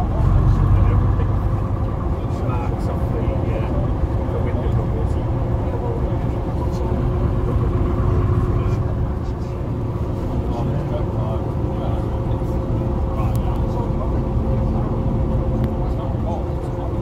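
Bristol RELH coach with ECW body heard from inside the saloon while under way: its rear-mounted engine running steadily with a low rumble and a steady whine, over passengers chatting.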